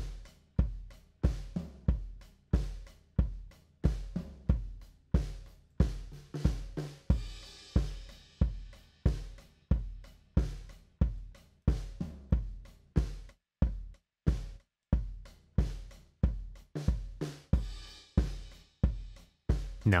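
Soloed kick-drum microphone track playing back through a compressor: steady kick hits about three every two seconds, with cymbals and snare spilling into the mic between them and the cymbal spill swelling around the middle and near the end. In places the sound between hits drops away to nothing. There is so much cymbal in the kick mic that gating it would make it pump.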